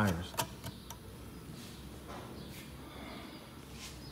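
Low, steady background noise of a shop with a few light clicks in the first second and faint ticks later on.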